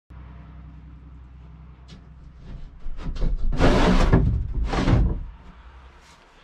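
Wooden smokehouse door being opened: a few clicks, then two loud scraping sweeps about a second apart, over a steady low hum.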